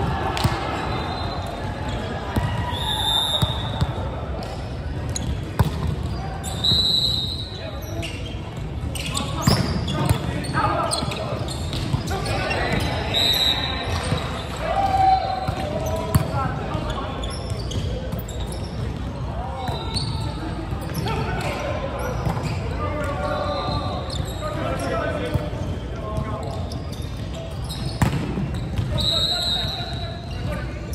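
Indoor volleyball play in a large, echoing hall: indistinct players' calls and chatter, sharp smacks of the ball being served and hit, and several short high squeaks of shoes on the hardwood court.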